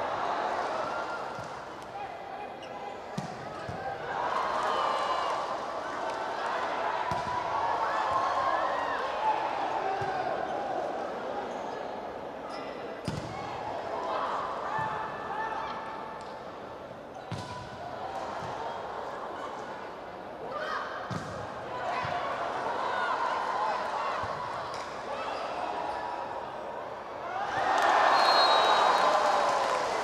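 Volleyball arena crowd noise with voices and shouts during a long rally. The ball is struck sharply every few seconds by hits and spikes. The crowd rises to loud cheering near the end as the rally is won.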